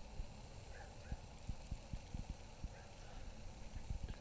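Faint, irregular low thumps of footsteps and hand-held phone handling as the camera is carried around an open convertible, with a few faint short chirps.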